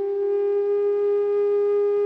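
A flute holding one long, steady note with a pure, almost whistle-like tone.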